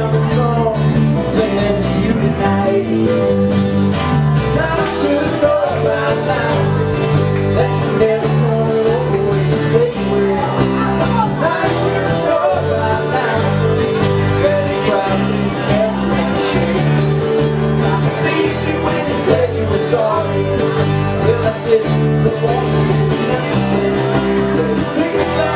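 Small live band playing an acoustic song: two strummed acoustic guitars over electric bass guitar and drums.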